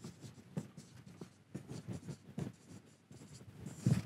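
Marker pen on a whiteboard, writing words in a quick run of short scratchy strokes, with a slightly louder stroke just before the end.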